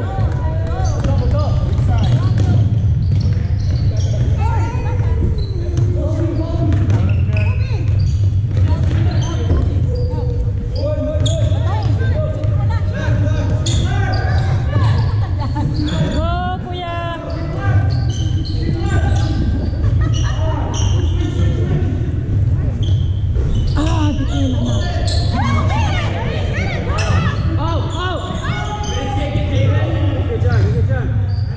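Basketballs bouncing on a hardwood gym floor during play, with repeated short thuds throughout in a large, echoing hall. Voices of players and spectators run alongside.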